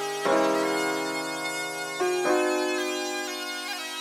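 Rap/trap instrumental beat with sustained keyboard chords, a new chord starting about every two seconds and fading between. No drums or bass are heard.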